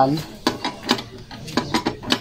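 Irregular light metallic clicks and clinks, a few per second, from a T-wrench turning a bolt that holds a steel step grill to a scooter's floorboard.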